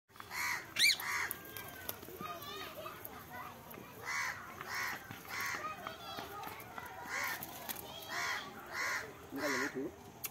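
Rose-ringed (Indian ringneck) parakeet giving a series of short, loud calls, about nine in all at uneven gaps, with a quick rising whistle about a second in.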